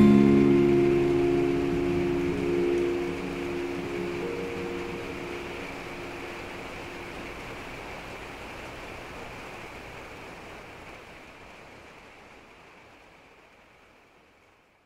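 The final acoustic guitar chord of a folk song ringing out and dying away, its notes fading over the first few seconds. A steady hiss lingers under it and fades slowly to silence near the end.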